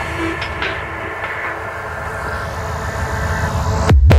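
Psytrance DJ mix in a breakdown: the kick drum drops out and a held synth drone plays, its brightness dimming and then rising again before the beat comes back at the very end.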